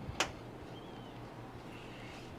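A single sharp click a moment after the start, then faint steady background noise with a brief faint high chirp about a second in.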